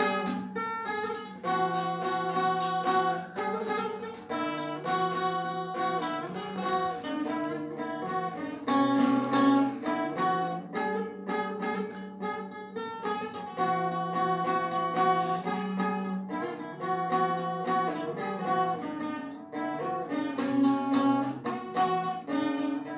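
Saz (bağlama), a long-necked Turkish lute, played solo: a melody of quickly plucked notes, with phrases that repeat.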